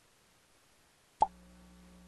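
A single sharp click about a second in, out of near silence, followed by a faint steady electrical hum.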